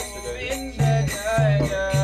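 Devotional group chanting of a mantra, kirtan-style, with sustained low accompanying tones and jingling percussion.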